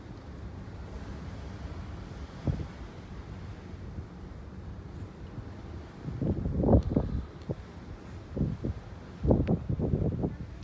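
Wind buffeting the microphone in irregular gusts, with stronger gusts about six seconds in and again near the end.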